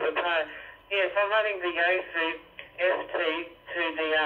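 Voice received over the W5 network radio's 70cm analogue FM receiver and played through its small speaker: continuous talk, thin and band-limited, coming in clearly.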